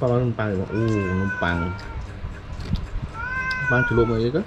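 A low adult voice speaking, with two long high-pitched calls over it, one about a second in and another near the end.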